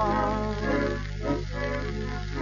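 Instrumental passage of a 1931 tango played from a 78 rpm gramophone disc: the accompaniment holds sustained chords between two sung lines, under a steady low hum.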